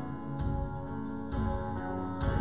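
Live worship-band music with no singing: sustained piano and strummed guitar chords over a drum kit, with a low beat landing about once a second.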